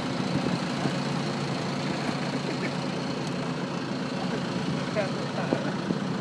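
A fishing boat's engine running steadily at a constant low hum, with a faint steady high whine above it.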